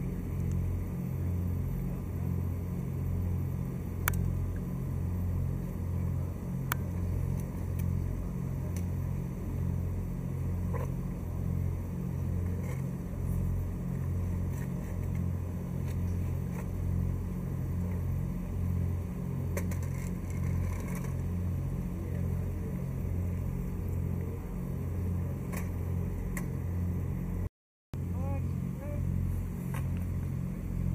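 A motor running steadily with a low, evenly pulsing drone throughout, with a few sharp clicks over it.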